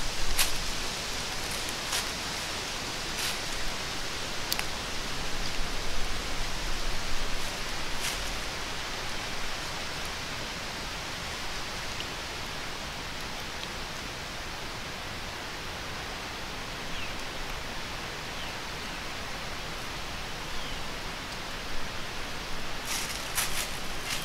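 A steady outdoor hiss in dry autumn woods, broken by a few sharp crackles of a white-tailed deer stepping through dry leaf litter, with a quick cluster of crackles near the end.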